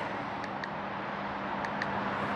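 Steady background traffic noise with a faint low hum and a few light clicks.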